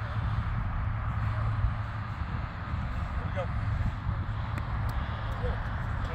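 Steady low rumble and hiss of wind on the microphone, with a few faint distant voices.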